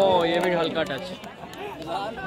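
People's voices talking and calling out, loudest in the first half second and fainter afterwards.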